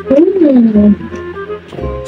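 A woman's closed-mouth 'hmm' of enjoyment while eating, a loud low hum about a second long that rises then falls in pitch, over background music.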